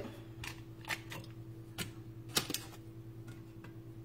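A knife cutting pats off a paper-wrapped stick of butter into a cast iron skillet: a few light, irregular clicks and taps, over a faint steady hum.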